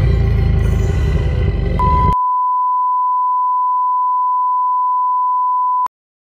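A loud, dense, bass-heavy music cue that stops abruptly about two seconds in, overlapped by a steady, pure, electronic beep tone that holds for about four seconds and then cuts off suddenly.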